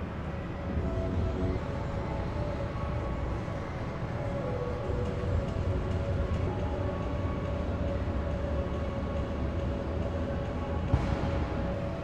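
Steady low rumble of a large indoor hall's background noise, with faint held tones above it.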